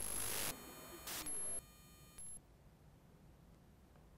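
Electronic transition sting: a noisy whoosh, then an electronic beep about a second in and a shorter blip about a second later, followed by faint hiss.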